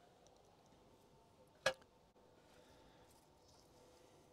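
Very quiet apart from one short knock about one and a half seconds in, from handling the stainless-steel bowl and utensils on the grill grate.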